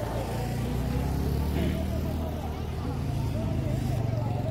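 Steady low rumble of motor traffic on a hill road, with people's voices faintly in the background.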